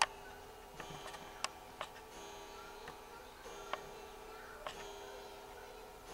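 Faint background music with held notes that change every second or so, and a few sharp clicks over it, the loudest right at the start.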